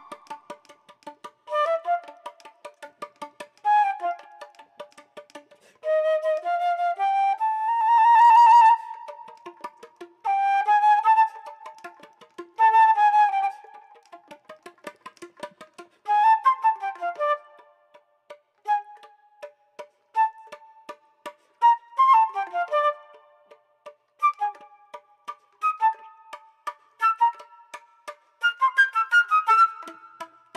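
Solo concert flute playing a pizzicato etude: rapid strings of short, plucked-sounding pops alternate with held notes. A slow upward pitch slide comes about six to nine seconds in.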